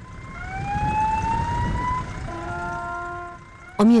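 Train horn sounding two blasts over the low rumble of a passing train: the first slides up in pitch, the second is lower and steady.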